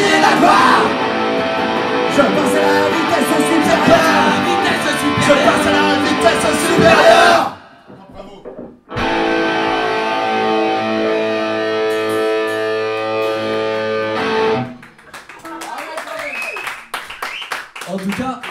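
Acoustic band playing live with guitar, the piece breaking off about seven seconds in. After a short gap a single held chord rings for about six seconds and then stops.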